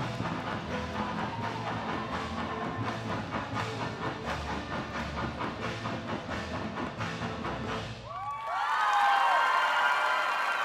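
Tinikling dance music with bamboo poles clacking together and against the floor in a steady rhythm. About 8 seconds in, the music stops and the audience breaks into cheering and whooping.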